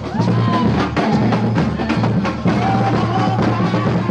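A Brazilian drum ensemble of large bass drums (surdos) played with two mallets each, beating out a loud, steady, driving rhythm, with a few higher pitched sliding tones over the drumming.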